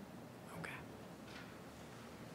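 Faint, brief speech: a quiet "okay" about half a second in, otherwise low room tone.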